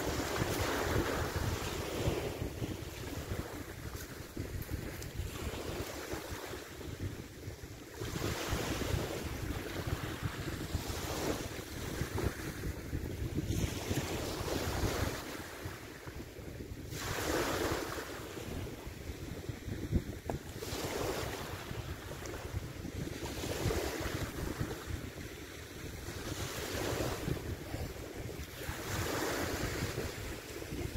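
Small waves breaking and washing on a pebble beach, surging every few seconds, with strong wind buffeting the microphone.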